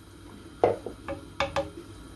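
Wooden spoon knocking against the stainless steel pressure cooker pot while stirring beans in water: about five short, sharp knocks in the second half.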